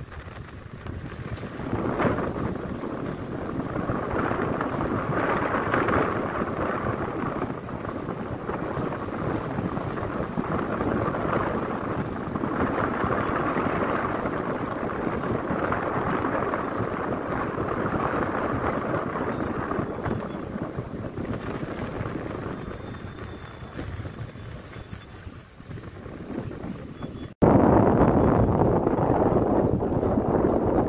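Wind buffeting the microphone on the deck of a moving passenger ship, rising and falling in gusts over the ship's steady running and water noise. About 27 seconds in, the sound cuts abruptly to a louder stretch of the same rushing noise.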